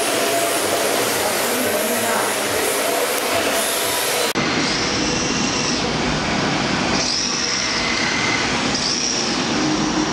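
Electric 2WD RC drift cars running in tandem: a steady hiss of hard tyres sliding on the smooth track with motor whine. In the second half there are three short high whines, about a second each, as the cars swing through the corners.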